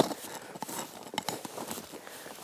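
Tree-planting spade working into hard ground among logging slash: irregular crunching and scraping, with a sharp knock at the start.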